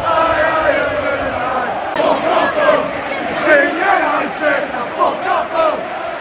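A large football crowd chanting and shouting together, many voices at once, with nearby fans' voices standing out over the mass a few seconds in.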